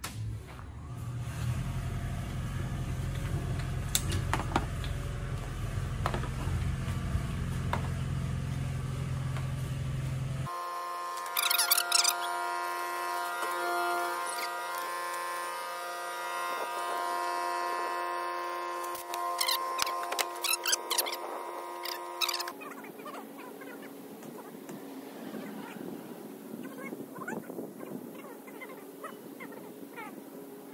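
Electric air compressor running with a steady low motor hum, building air to fill the bus's empty air system. About a third of the way in the sound cuts abruptly to a steadier, higher-pitched hum with a few bursts of clicks. Near two-thirds in it gives way to quieter background noise.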